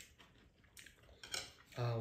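A wooden spoon and chopsticks clinking and scraping against ceramic bowls while eating, with a few sharper clicks a little after the middle. A voice starts speaking right at the end.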